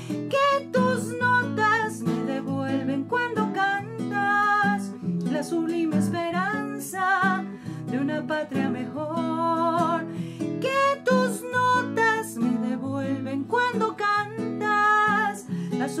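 A woman singing a Colombian bambuco to her own strummed classical guitar, her voice held in long notes with vibrato over steady chords.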